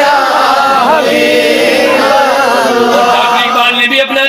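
A man's voice chanting a devotional verse in a slow, drawn-out melody, holding long notes whose pitch winds up and down without a break.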